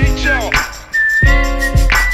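Hip-hop/R&B song playing between rapped lines, its beat carrying a high whistle-like melody line; the beat drops out briefly about a second in, then comes back.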